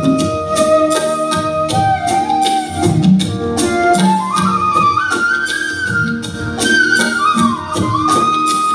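Live band playing an instrumental passage: a flute-like lead melody of long, gliding notes that climbs higher midway and drops back near the end, over a steady beat of tabla and percussion with keyboards.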